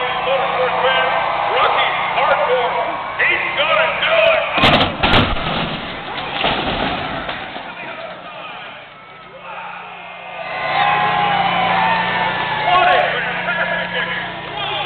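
A stunt car crashing down hard: two loud crashes about half a second apart, around five seconds in. They land in the middle of crowd noise over a steady low hum, and the crowd swells again near the end.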